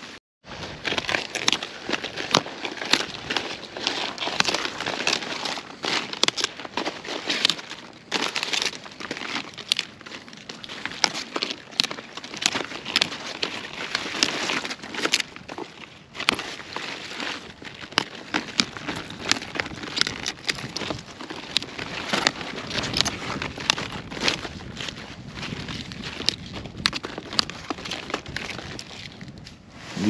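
Brussels sprout leaves being snapped off the stalk by hand: many irregular sharp snaps amid crackling and rustling of leaves.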